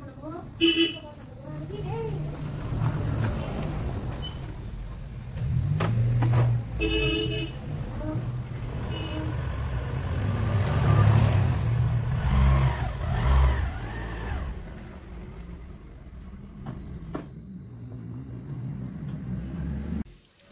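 Small motor scooter engine running, its revs rising and falling, with two short horn toots, one about a second in and one about seven seconds in.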